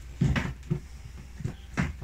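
Metal baking tray knocking against a wire cooling rack as it is turned over to tip out the baked buns: a few clunks, the sharpest just before the end.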